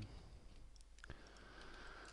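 Near silence: quiet room tone with one faint click about a second in.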